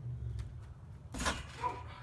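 A person landing on a backyard trampoline after jumping from a roof: faint knocks from the mat and springs under a steady low rumble. A short spoken word comes about a second in.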